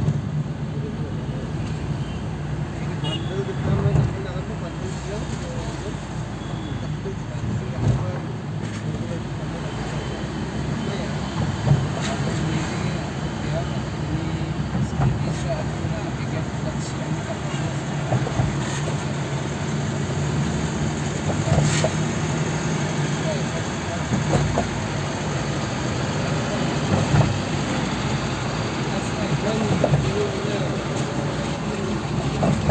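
Steady road and engine noise inside a moving car's cabin, a low rumble that runs throughout, with a few brief louder knocks, like bumps in the road.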